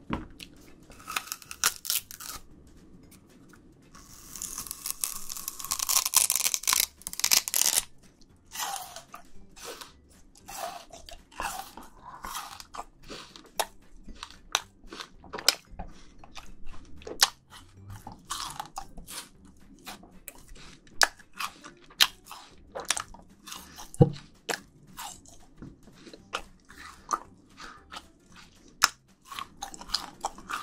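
Raw sugarcane stalk being bitten and chewed close to the microphones: sharp cracks and crunches as the teeth split the hard, fibrous cane. There is a louder, denser stretch of cracking and tearing from about four to eight seconds in, then separate crunches every half second to second.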